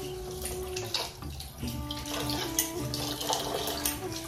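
Kitchen tap running into an aluminium pot as rice is rinsed in it, the water splashing and sloshing in the pot and into the steel sink.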